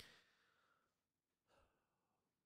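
A man's faint, long sigh at close range, fading over about a second, then a second, shorter breath about one and a half seconds in.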